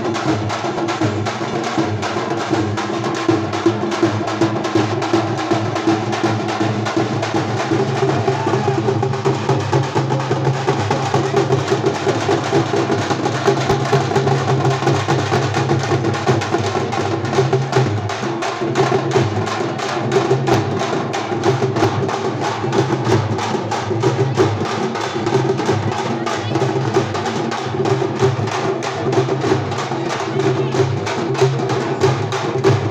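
A group of dappu frame drums beaten in a fast, unbroken rhythm, with crowd voices underneath.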